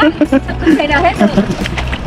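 People talking, with a steady low rumble underneath.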